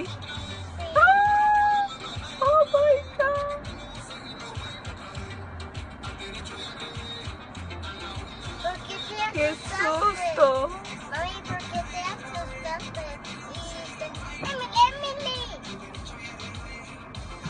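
A young girl's high-pitched voice calling out in short bursts, with background music running underneath.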